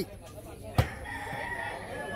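A rooster crowing, one long call starting about a second in. Just before it comes a single sharp smack of a volleyball being hit.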